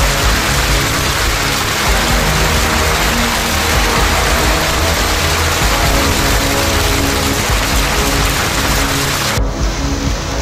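Hailstorm: a dense, steady hiss of hailstones and rain falling and striking the ground, under a background music bed of low sustained notes. The hiss changes abruptly near the end, losing its highest part.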